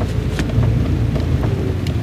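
Car driving slowly, a steady low rumble from inside the cabin, with wind buffeting the microphone and a few faint knocks.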